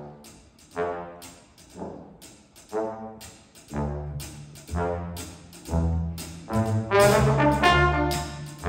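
A jazz big band's four-trombone section, with bass trombone, playing short repeated phrases about once a second over cymbal strokes from the drum kit. Low notes join about four seconds in, and the band grows louder toward the end.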